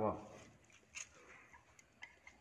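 Quiet eating sounds of people eating noodles from plates with chopsticks, with one light click about a second in, after a voice trails off at the very start.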